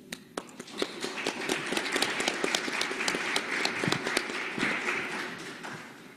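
Audience applauding, building up in the first second and dying away near the end.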